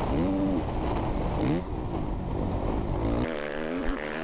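Motocross bike engine revving up and down as the rider rides the dirt track, heard through an onboard camera with a heavy low wind rumble. About three seconds in, the low rumble drops away and the engine sound carries on without it.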